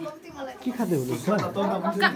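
People talking at close range, a woman's voice among them, with a short hissing noise about half a second in.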